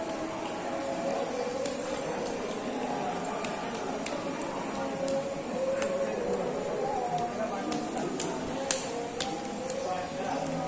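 Indistinct voices of people nearby, talking without clear words, with a few sharp clicks in the second half, the loudest nearly nine seconds in.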